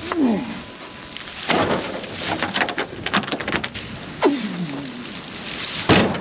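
A man grunts with effort, a falling strained sound right at the start and again about four seconds in, as he lifts and carries a heavy red oak round. Between the grunts, dry leaves crunch and rustle underfoot.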